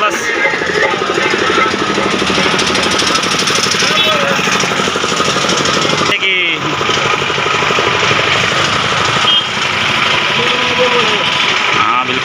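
A combustion engine running close by with a fast, even chugging beat, in two stretches broken by a short dip about six seconds in.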